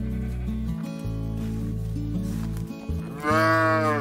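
A sheep bleating once, a single drawn-out baa of under a second near the end, over background music.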